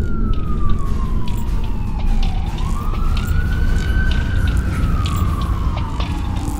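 An emergency siren wailing in slow sweeps: its pitch falls, rises and falls again, over a steady low rumble.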